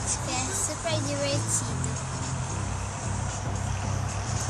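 Steady low hum of a car's engine running, heard inside the cabin, under music and a voice.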